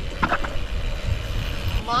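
Bicycle rolling across the skatepark deck: steady tyre hiss and low rumble with small knocks, overlaid by wind on the camera microphone.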